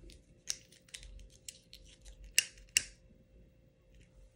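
A handful of light, sharp clicks and taps, spaced about half a second apart at first, with the two loudest close together about two and a half seconds in.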